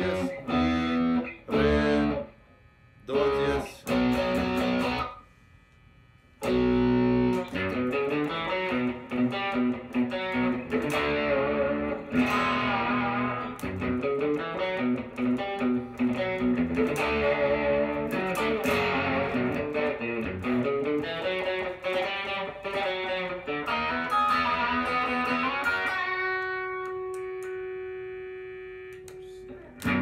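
Electric guitar, a Fender Stratocaster on its neck pickup through a Line 6 Helix processor, playing power chords. There are a few short chord stabs with gaps in the first seconds, then continuous picked playing, ending on a chord left to ring and fade over the last few seconds.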